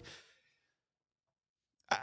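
A pause in a man's talk that is otherwise dead silent: his last word trails off at the start, and a short breath comes just before he speaks again at the end.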